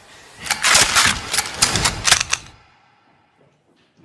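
A rapid, irregular run of sharp gunshot cracks in a film's action sound mix, cutting off suddenly about two and a half seconds in and followed by silence.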